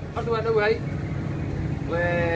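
A man's voice speaking briefly in Somali, over a steady low hum in the background.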